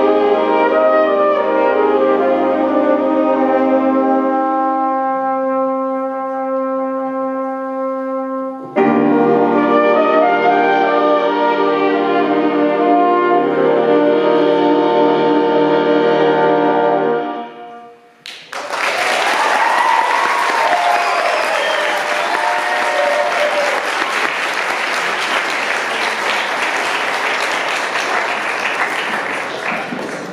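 A high school jazz big band of saxophones, trumpets and trombones holds its closing chords. A first chord dies away, then a new full chord comes in about nine seconds in and is held until the band cuts off sharply after about seventeen seconds. Audience applause follows and runs on.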